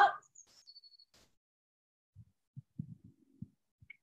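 Soft, low thuds of feet stepping on a rubber gym floor during a side-to-side step-and-reach warm-up: a handful of irregular steps in the second half.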